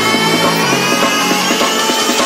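Electronic dance music with fast, busy drum hits over held bass notes and a slowly rising sweep.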